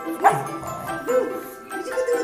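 A pug barks once, sharply, about a quarter second in, begging for milk from a bottle held above her head. Light background music with chimes plays under it.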